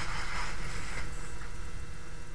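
Whiteboard being wiped clean: a steady rubbing hiss against the board's surface that fades out a little after a second in, over a low background hum.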